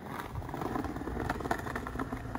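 Skateboard wheels rolling over brick pavers: a steady rumble with a few sharp clicks.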